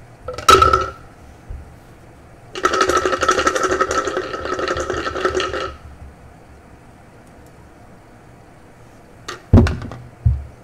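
Two dice dropped into a clear tumbler with a ringing clink, then shaken hard inside it, rattling for about three seconds. Near the end the tumbler is knocked down onto the table twice to roll them.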